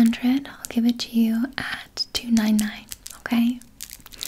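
A woman's soft, whispery speech close to the microphone, broken up by small clicks.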